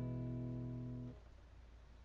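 Acoustic guitar's closing chord ringing out and slowly fading, then cut off suddenly about a second in, leaving a faint low hum.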